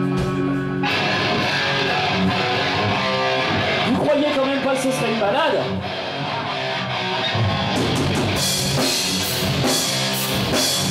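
Heavy metal band playing, led by distorted electric guitars: a held chord gives way to a driving riff just under a second in. A voice sings over it around the middle, and cymbal crashes come in near the end.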